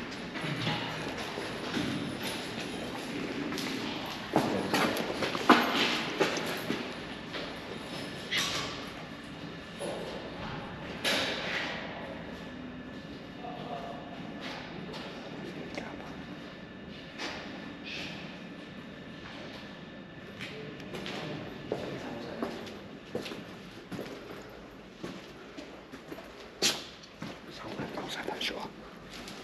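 Footsteps scuffing and crunching over a debris-strewn floor, with irregular knocks and thumps.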